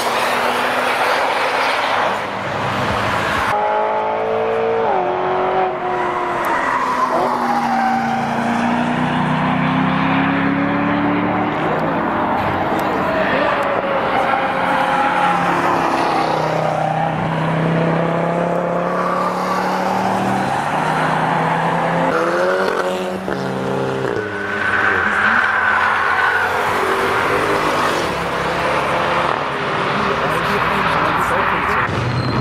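Several cars driving past on a race track one after another, engines climbing in pitch as they accelerate and dropping back at gear changes.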